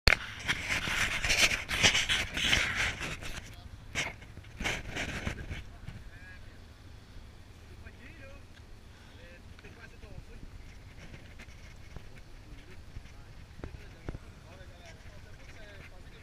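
Rustling of a hand on the camera and wind on the microphone for the first few seconds, with a few knocks, then faint distant voices.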